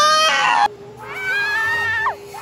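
An angle grinder pressed against metal, throwing sparks, with a loud rasping grind that cuts off abruptly a little over half a second in. A high-pitched scream overlaps the grinding, and a second long, high scream follows, dropping in pitch at its end.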